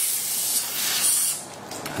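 Steady spray hiss from a blue-tipped dental syringe tip held in the access cavity of an extracted molar. The hiss cuts off about one and a half seconds in.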